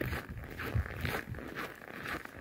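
Footsteps crunching in cold, dry snow at about −18 °C, a run of irregular scrunching steps.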